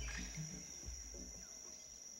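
Faint jungle ambience: a steady high-pitched insect drone. A few soft, low music notes fade out over the first second and a half.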